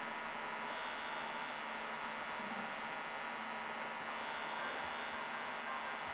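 Steady electrical hum and hiss from a warmed-up 1949 Emerson 611 vacuum-tube television set, a buzz made of many evenly spaced tones with no other events.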